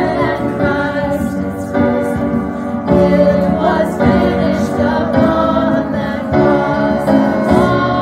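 Three women singing a worship song together as a small group, accompanied by piano and electric bass guitar.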